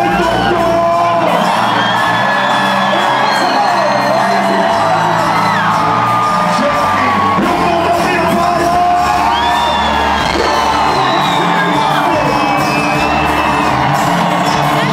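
Live band playing loud through a concert hall PA, heard from within the audience: deep held bass notes under high gliding lines, with no break.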